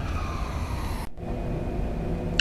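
Street traffic rumble with a distant siren-like tone slowly falling in pitch. The tone cuts off suddenly about a second in, leaving steady traffic noise.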